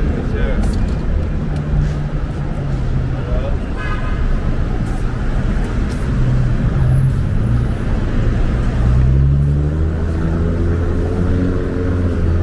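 Street traffic: a steady rumble of motor vehicle engines passing, with one engine rising in pitch about nine seconds in and holding there to the end.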